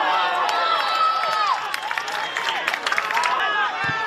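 Footballers shouting and calling to each other during play, with scattered sharp knocks through it.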